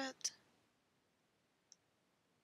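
The end of a spoken word, then near silence broken by a single faint click near the end, a key or button pressed at the computer as the notebook cells are run.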